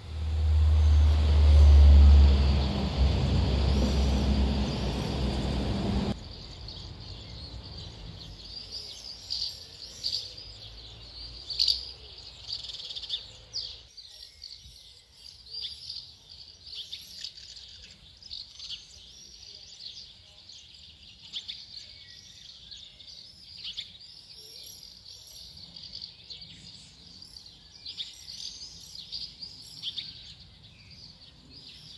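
Many short, high calls of common swifts and house martins flying round the eaves, chirps and screams coming in quick clusters. For the first six seconds a loud low rumble with wide noise covers them, then stops abruptly.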